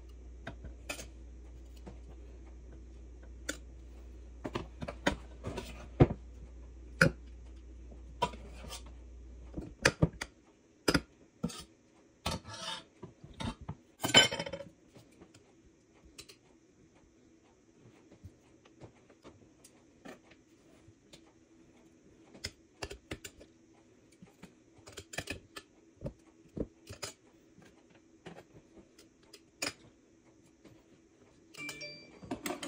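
Stainless steel ladle clinking and scraping against a steel pot and a large glass jar as radish pickle is spooned into the jar. The clinks are irregular, with the loudest about halfway through.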